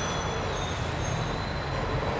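Steady background hum and hiss of a busy indoor space, with faint high-pitched whining tones running through it.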